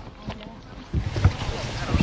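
Low rumbling noise of wind on the microphone and a small inflatable boat on the water. It starts suddenly about a second in, after a quieter stretch of outdoor background noise.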